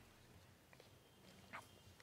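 Near silence: faint room tone with a few small clicks.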